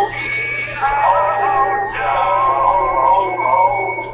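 A recorded children's song playing: voices singing held, wavering notes over instrumental accompaniment.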